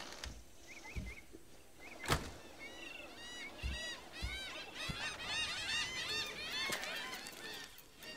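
A flock of birds calling, a few calls at first and then many overlapping calls that grow thicker toward the end. A sharp click about two seconds in fits the camper trailer's door shutting. Soft thumps fit footsteps on the wooden deck.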